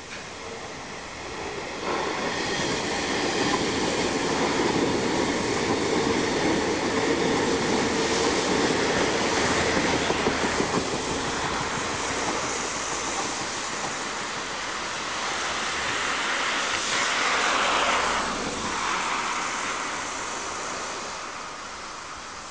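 JR East 583 series electric train running past on the rails: its rumble and wheel noise swell about two seconds in, peak again as it passes close by about 17 to 18 seconds in, then fade as it moves away.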